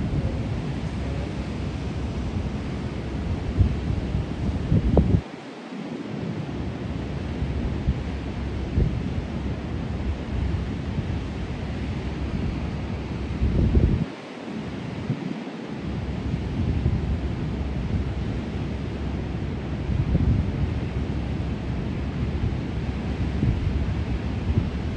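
Wind buffeting the microphone in gusts over the steady wash of ocean surf breaking on a beach. The low wind rumble drops out briefly about five seconds in and again around fourteen to fifteen seconds.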